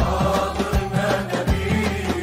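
Libyan traditional folk song: men singing in chorus to an oud, with a steady beat about every three-quarters of a second from hand claps.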